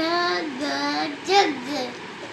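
A young child's voice reading aloud in a drawn-out sing-song, about three chanted phrases.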